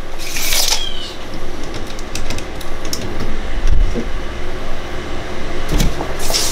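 A steel tape measure being pulled out and handled: a short hiss about half a second in, then scattered light clicks and knocks, over a steady low rumble.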